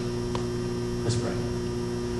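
Steady electrical mains hum, with a faint click about a third of a second in and a short soft sound about a second in.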